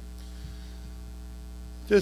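Steady low electrical mains hum with the faint tail of piano notes dying away. A small click about half a second in, and a man's voice begins right at the end.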